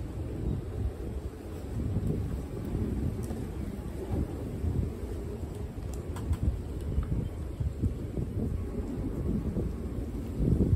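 Wind buffeting the microphone, an uneven low rumble that rises and falls, with a few faint ticks about six seconds in.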